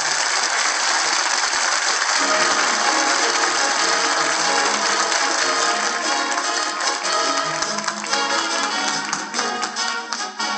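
Orchestral theme music from a 1940s radio drama, playing continuously and full, growing a little choppier near the end.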